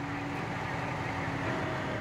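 Steady low rumble of an idling vehicle engine, with faint held tones above it.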